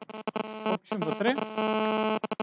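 A buzzing electrical hum with a steady pitch, chopped on and off rapidly (about twelve pulses a second) before holding steady near the end, mixed with a garbled, robotic-sounding voice.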